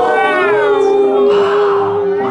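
A voice singing one long held note, dipping in pitch at first and then held steady, with a breathy hiss joining about halfway through.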